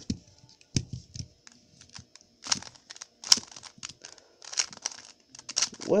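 A plastic 3x3 Rubik's cube turned by hand, its layers sliding and snapping into place in a series of short scraping clicks about a second apart. The turns test corner cutting, a face turned while another layer is out of line.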